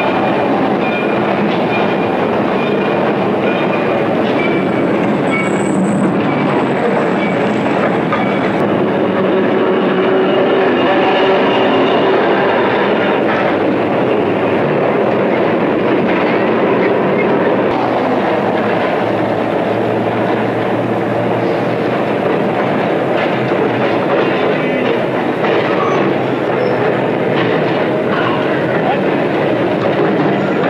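Trolley cars running on street rails, their wheels clattering steadily over the track amid street noise. A thin high wheel squeal comes about five seconds in and lasts a few seconds.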